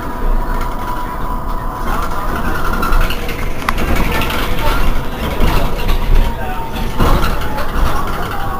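An Irisbus Cristalis ETB18 electric trolleybus standing still, humming with several steady tones over a low rumble of street noise. A sharp click comes a little over halfway through.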